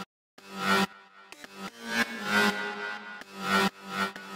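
Synth lead one-shot with a slow attack, played as a sequenced pattern. Each of about four notes swells in and then cuts off abruptly.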